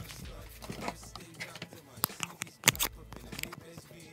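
An iPhone being picked up and handled after falling onto a table: a few light clicks and knocks, most of them about one and a half to three seconds in.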